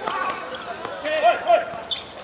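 Footballers shouting during play, with two short, loud calls a little after a second in, and sharp thuds of the ball being kicked on the hard court.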